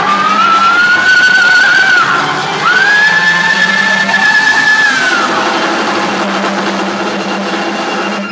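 Rock band playing live: a long high note slides up and holds for about two seconds, breaks off, then a second, higher note is held for about two more seconds over a steady low drone of organ and bass. The music thins out in the last few seconds.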